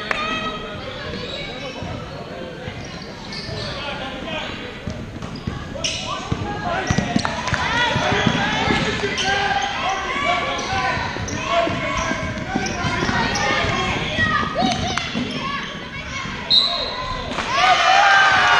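A basketball being dribbled and bouncing on a hardwood gym floor during play, the thuds echoing in the large hall, with many voices of players and spectators. The voices get louder near the end.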